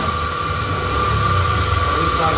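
Steady mechanical hum with a thin, steady high whine over it, unchanging throughout.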